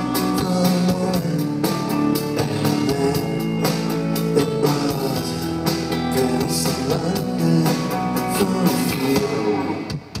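Amplified live rock band playing: electric guitar, keyboards and drum kit together in a steady full mix.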